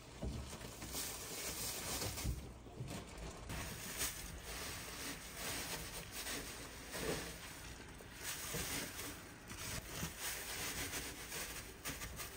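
Faint, irregular rustling and crackling of loose wood-chip bedding being handled and moved about in a chicken coop.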